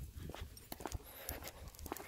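A leashed German Shepherd walking on wet paving: faint steps and scattered light clicks, fairly quiet overall.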